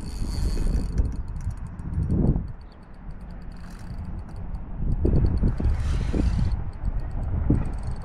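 Spinning reel being cranked, its gears and handle turning with a fine ticking as line is wound in against a hooked fish.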